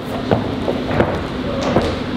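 Hands and feet thudding on a hard gym floor during a tumbling pass: a few short thuds roughly two-thirds of a second apart over a steady background hum.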